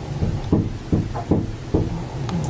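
Knuckles knocking on a wooden door: four sharp, evenly spaced knocks.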